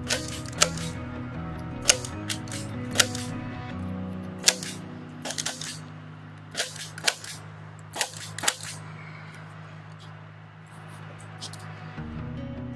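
A hand staple gun driving staples through screen mesh into a wooden board. It gives about a dozen sharp snaps at irregular intervals and stops after about eight and a half seconds.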